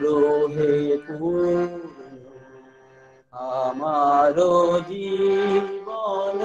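A man singing solo in long held notes that glide between pitches. He breaks off for about a second near the middle, then sings on.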